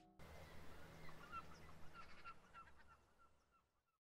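Faint, quick, repeated bird chirps over a low hum, fading out toward the end.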